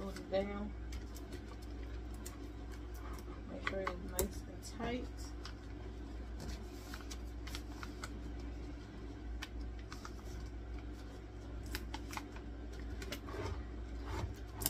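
Hands handling and smoothing sheets of sublimation paper on a Teflon sheet: scattered light clicks and paper rustles over a steady low hum, with a few brief mumbled words near the start and about four seconds in.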